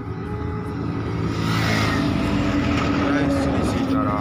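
A motor vehicle passing close by on the highway, its engine drone steady and its tyre and road rush swelling about a second and a half in.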